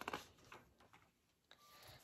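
Near silence: room tone, with a few faint soft clicks near the start as a hardcover storybook's page is handled.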